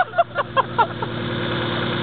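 4x4 SUV's engine running steadily at low revs as it crawls through deep mud, with a few short shout-like calls over it in the first second.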